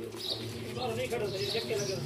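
Birds calling, with faint men's voices talking in the background.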